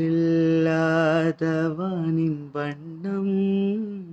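A man singing alone without accompaniment, holding long notes with vibrato and ornamented pitch turns, broken by short breaths about one and a half and two and a half seconds in.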